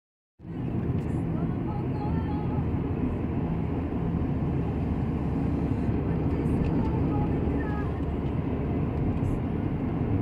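Steady engine hum and tyre rumble of a car driving, heard from inside the cabin. It starts a fraction of a second in.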